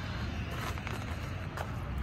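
Steady low outdoor rumble, with a couple of faint crunches of footsteps on gravel.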